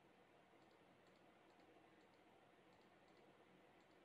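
Near silence with a few faint computer-mouse clicks over a low hiss.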